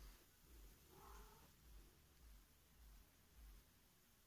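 Near silence, with one faint, short cat meow about a second in.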